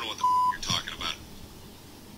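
A short, steady electronic beep about a quarter of a second in, then a few faint words of cartoon dialogue played back from a Family Guy clip.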